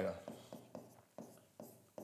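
A pen writing on a board: a string of faint, short, irregular strokes and taps as a line of working is written out.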